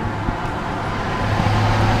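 Low steady engine hum of a motor vehicle, growing a little louder toward the end.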